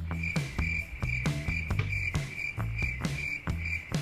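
Cricket-chirping sound effect, a steady high trill, played for the awkward silence after a joke gets no answer, over background music with a steady beat. The trill stops abruptly near the end.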